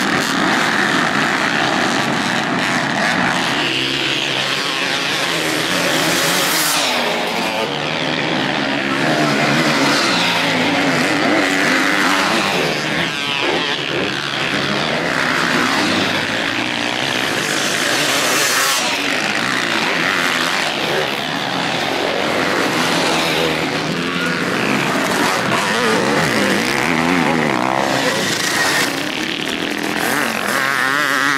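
Motocross dirt bike engines revving and racing, several bikes at once, with pitch rising and falling as the riders work the throttle. The sound changes abruptly about seven seconds in and again near nineteen seconds.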